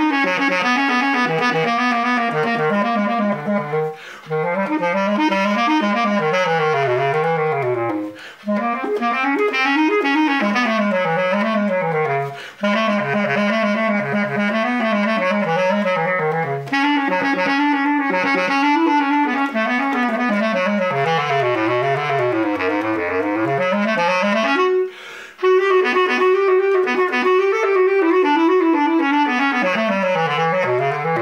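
Bass clarinet played solo: a fast orchestral passage of running notes and wide leaps between low notes and higher ones in the clarion register, broken by a few short pauses.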